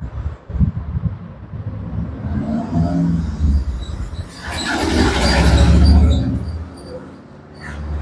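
A motor vehicle running and passing by: a low rumble that swells to its loudest about five to six seconds in, then fades.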